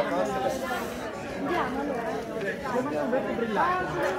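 Several people talking at once in overlapping, indistinct conversation.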